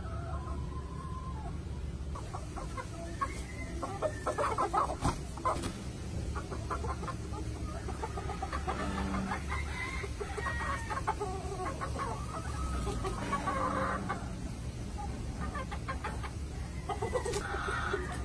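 Gamefowl chickens clucking, with a quick run of clucks about four to six seconds in and longer drawn-out calls later on.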